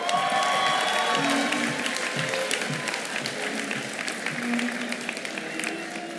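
An audience applauding, with a cheering whoop near the start, over quiet background music. The clapping is fullest in the first couple of seconds and then eases off.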